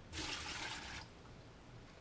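Rinse water poured out of a plastic bedpan into a bedside commode's bucket: a single splashing pour that starts just after the beginning and stops about a second in.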